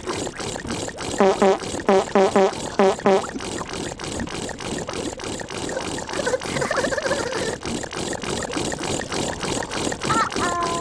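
Tubby Custard machine running with a steady rhythmic pumping hiss as it keeps pouring pink custard into an overflowing bowl. About a second in comes a run of six short pitched toots, each dipping and rising in pitch.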